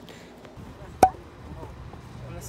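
A single sharp knock about a second in, with a brief ringing tone after it.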